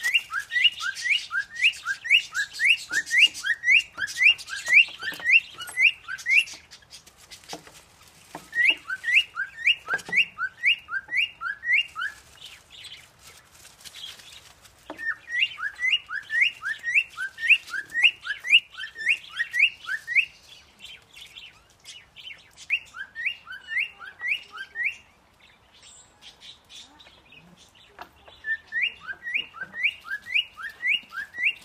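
A small songbird singing a quick, repeated two-note chirping phrase, a higher note then a lower one, in runs of several seconds with short pauses between them.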